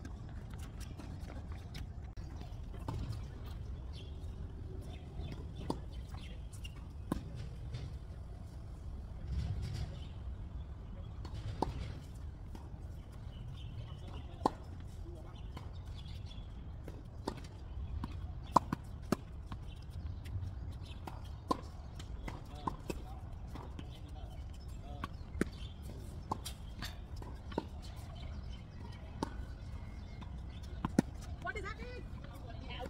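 Tennis rally on a hard court: tennis balls being struck by rackets and bouncing, a string of sharp pops at irregular intervals over a low steady rumble.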